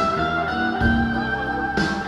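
Live band playing a slow jazz-blues tune: an electric guitar holds long, slowly bending notes over bass and light drum hits about once a second.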